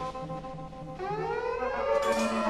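Experimental electronic free jazz: held electronic tones, then from about a second in a cluster of tones gliding slowly upward in pitch like a siren.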